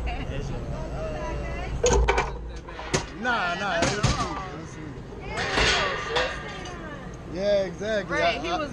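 A few sharp clunks, about two, three, four and five and a half seconds in, over a steady low rumble and people's voices.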